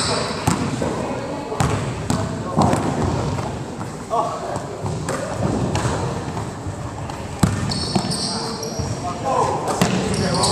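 A basketball bouncing irregularly on a hardwood gym floor, with players' footsteps, in a large gym. There are a couple of high squeaks near the end.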